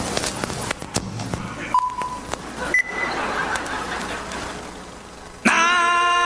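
Clicks in the first second or so, then two short beeps, a lower one and a higher one, over background noise that slowly fades. Near the end a loud singing voice suddenly starts a chant, the opening of a cartoon's song.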